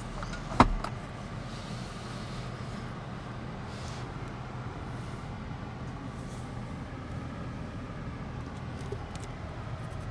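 A single sharp click about half a second in, as the rear headrest of the car is moved, then a steady low hum inside the car's cabin.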